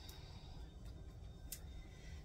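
Faint handling of seasoned potato cubes being spread by hand in a glass baking dish: a few soft, small clicks, the clearest about one and a half seconds in, over quiet room tone.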